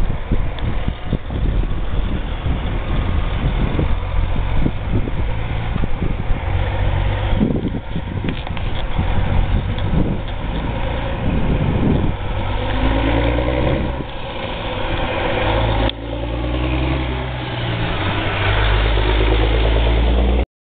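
Diesel engine of a loaded tri-axle dump truck as it crosses the railroad tracks and pulls toward and past. Its note rises as it accelerates in the second half, with a brief break near 16 s and a heavy low rumble at the end.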